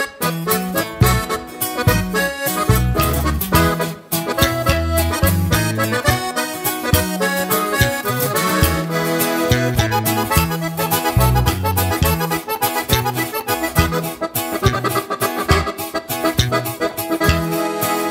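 Instrumental intro of a sierreño corrido played live by the band: an accordion carries the melody over a rhythmic backing and a steady bass line.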